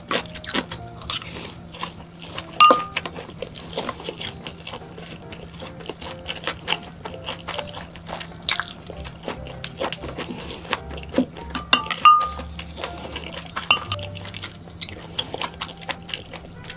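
Close-miked eating sounds: chewing and mouth sounds, with sharp clicks of chopsticks against ceramic bowls, over quiet background music.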